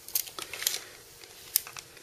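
Hands handling a pocket tape measure against a memory module: a few soft, uneven clicks and light scrapes as the tape is lined up.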